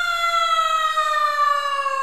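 A single long siren-like tone, rich in overtones, sliding slowly and steadily downward in pitch.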